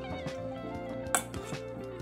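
Background music, with a metal whisk clinking against a stainless steel mixing bowl while seasoned sliced beef is stirred. There is one sharp click a little over a second in.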